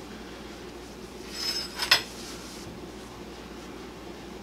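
Purse-strap buckle clinking as the fabric strap is handled and fed through it: a short cluster of clinks with a brief ringing tone about a second and a half in, ending in one sharp clink.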